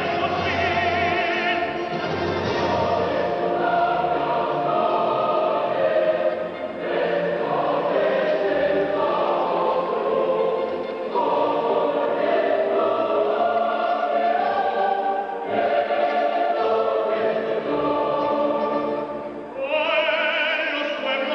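A large choir singing a slow piece of held notes, in phrases separated by short breaks every few seconds. It is heard on an old VHS recording of a television broadcast, with the treble cut off.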